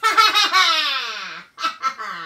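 A high, comic puppet voice for the worms in the can gives a long gleeful laughing cry that slides down in pitch, then two short bursts of laughter and another falling cry near the end.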